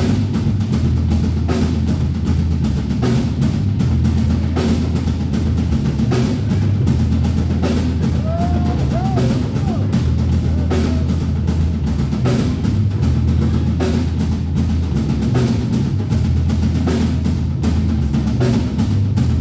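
Live soul-rock band playing: a drum kit keeps a steady beat with cymbal strokes about four a second over a sustained low bass line and keyboards. A short bending melodic phrase sounds about halfway through.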